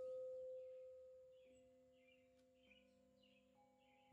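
Soft meditation music of sustained ringing tones: one long tone fading slowly, joined by further lower and higher notes about a second and a half in and again later.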